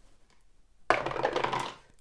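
Two six-sided dice, one red and one green, thrown into a dice tray and clattering about a second in, settling in under a second.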